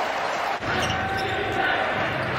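NBA game court sound: a basketball being dribbled on the hardwood amid the arena's background noise, which changes abruptly about half a second in.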